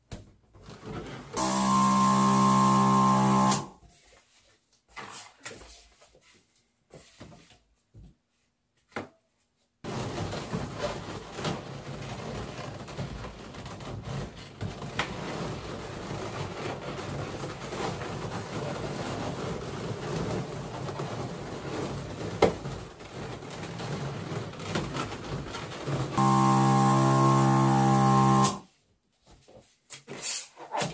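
Electric balloon inflator running twice, for about two seconds each time, once near the start and once near the end: a steady motor hum with air hiss that starts and stops sharply as balloons are filled.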